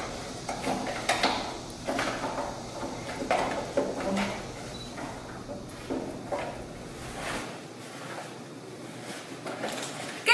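Fabric rustling and strap handling, with scattered knocks and taps, as two janggu hourglass drums are hurriedly strapped on.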